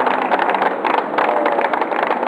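Street traffic, with a car engine running close by.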